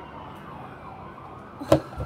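Police siren wailing faintly in the distance, with one sharp click near the end.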